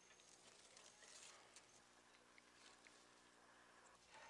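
Near silence: faint background hiss and a low steady hum, with a few soft ticks.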